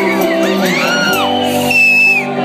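Live rock band holding a sustained chord, with shouts and whoops rising and falling over it.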